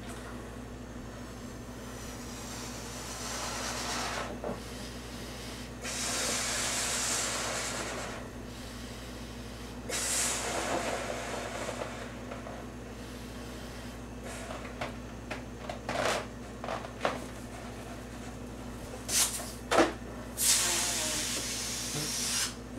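A latex balloon being blown up by mouth: three long, hissing breaths pushed into it, each a couple of seconds long, with a handful of short, sharp sounds in the later part.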